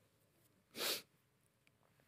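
A single short, airy breath noise from a man close to a head-worn microphone, a quick breath or sniff, a little under a second in.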